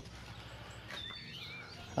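Faint bird chirps, a few short wavy calls about midway, over quiet outdoor background noise.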